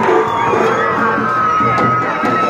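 Loud festival procession music over a crowd, with a long high note held from about halfway through.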